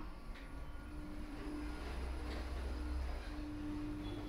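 OTIS Gen 2 lift car setting off and travelling: a low hum from the drive that swells about a second in and eases near the end, with a faint whine that comes and goes.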